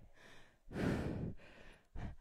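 A woman's breathy exhale, one sigh-like breath of under a second starting about half a second in, from the exertion of a workout.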